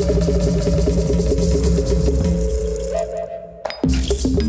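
Background music with a steady bass line and evenly repeating notes. It fades and breaks off near the end, and a new passage starts with sharp percussive hits.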